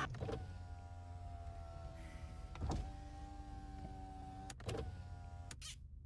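A steady, whirring hum made of several held tones, broken by a few sharp clicks, that cuts off suddenly near the end.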